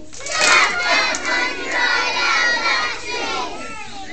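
A group of young children shouting and squealing together. It breaks out suddenly and loudly about a third of a second in, then dies away after about three seconds.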